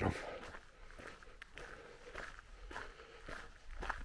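Footsteps on a gravel path at a steady walking pace, a step roughly every half second.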